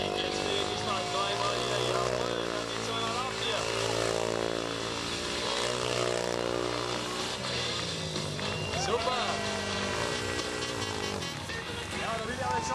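Speedway motorcycle's single-cylinder engine running at low revs as the bike is ridden slowly, its pitch rising and falling with the throttle and dropping away near the end.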